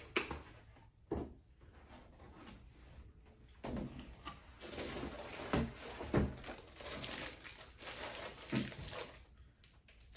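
Cardboard packaging inserts and plastic wrapping being handled while pieces are lifted out of a box: irregular rustling and crinkling, with a few sharp knocks of cardboard.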